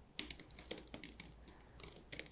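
Faint, irregular light clicks and ticks, several a second, as a wet acrylic pour canvas is held up and tilted in gloved hands.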